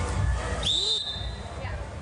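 Referee's whistle: one short blast a little over half a second in, its pitch jumping up quickly and then holding a steady high tone for about half a second, plausibly the signal for the next serve.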